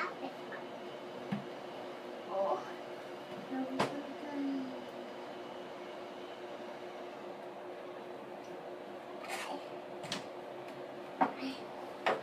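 A young child rummaging among books on a shelf: scattered knocks and rustles of handled books, with a few short wordless child vocal sounds, over a steady low hum.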